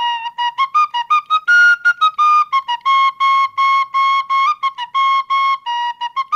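Solo flute-family wind instrument playing a melody of short, separately tongued notes in a narrow high range, some repeated on one pitch, starting suddenly after silence.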